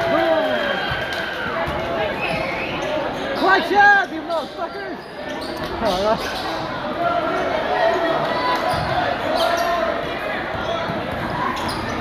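Basketball bouncing on a hardwood gym floor during play, in short separate strikes, with crowd chatter throughout in a large indoor gym.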